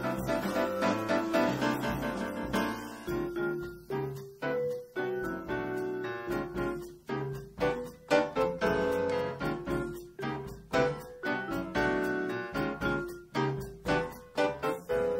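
Live jazz quartet of grand piano, vibraphone, bass guitar and drum kit playing a tune. Dense sustained chords for the first few seconds give way to separate struck notes that ring and fade.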